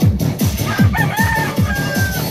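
Electronic dance music with a fast, steady beat. A rooster crows over it, starting under a second in: one long call that rises at the start and is held almost to the end.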